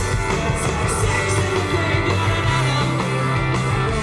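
Live rock band playing an instrumental passage with no vocals: electric guitars, bass guitar and drums.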